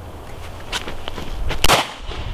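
A single handgun shot about one and a half seconds in, sharp and loud with a short echo after it, preceded by two fainter ticks.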